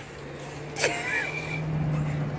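Road vehicle engine running close by on the street, a steady low hum that grows louder through the second half.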